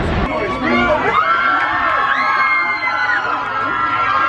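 A crowd of fans screaming and cheering, many high voices overlapping in long held shrieks.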